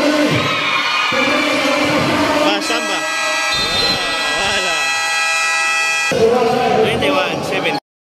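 Basketball game buzzer sounding one steady electronic tone for about three and a half seconds as the clock runs out to end the first quarter, over crowd voices and cheering. The sound cuts off abruptly near the end.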